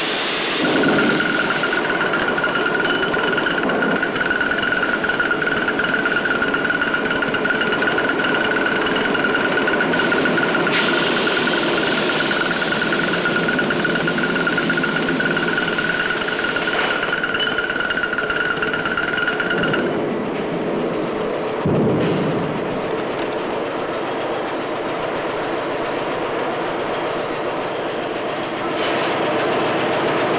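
Steady vehicle noise: a continuous rumble with a high, steady whine over it. The whine stops about twenty seconds in, and a lower rumble carries on.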